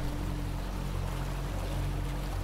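Motorboat engine running steadily: a low, even hum over a soft wash of water.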